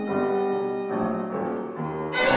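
Live chamber music: violin and piano playing a fairly quiet classical passage, the notes changing a few times, roughly every half second.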